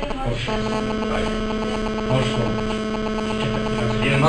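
A steady electrical hum: a constant buzzing tone with a low drone beneath it, unchanging throughout.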